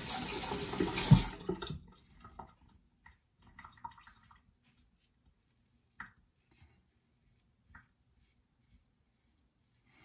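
A tap runs for the first couple of seconds, then shuts off. After that come a few faint, short scraping strokes of a Parker 26C open-comb safety razor cutting through ten days of neck stubble, with a few soft clicks.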